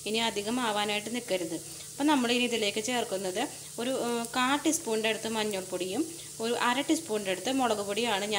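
Sliced onions sizzling in hot oil in a frying pan, a faint steady hiss, with a woman's voice talking loudly over it in short phrases.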